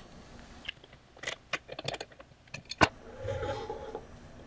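A quick run of light clicks and taps of hard plastic and metal as a dovetail router bit is handled in its clear plastic case, with one sharper knock about three seconds in, followed by a soft rustle.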